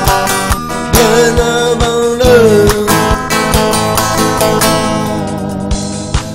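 Sunburst Squier Stratocaster electric guitar strummed in rhythm over a disco backing track with a steady drum beat.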